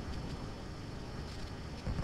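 Faint steady background hiss with no distinct events: the room tone of a voice recording.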